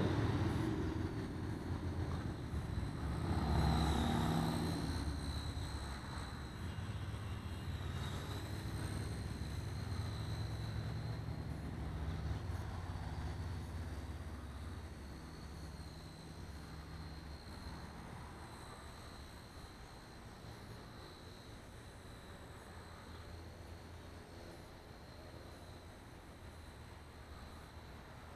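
Blade Nano CP S micro collective-pitch RC helicopter in flight: its electric motor and rotor give a high whine that wavers in pitch as it manoeuvres, growing fainter in the second half as it flies farther off. A low rumble sits underneath, strongest in the first half.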